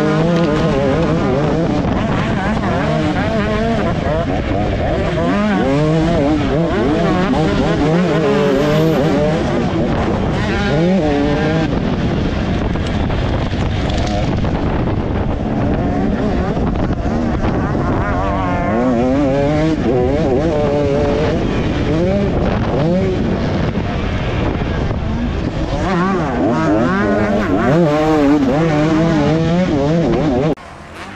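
2024 KTM 250 SX two-stroke motocross bike running hard, its revs rising and falling over and over as the rider accelerates, shifts and rolls off, picked up close by a camera mounted on the bike.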